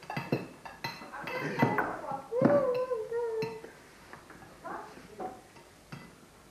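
Clinks and knocks of a plate and cutlery on a wooden table, with a short, drawn-out high-pitched vocal sound about halfway through. A few softer clicks follow.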